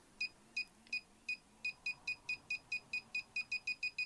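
KKmoon handheld pinpointer metal detector giving short, high-pitched beeps, about three a second at first and speeding up steadily to several a second as its tip closes in on a metal ring. The quickening beep rate is the detector signalling that the target is getting nearer.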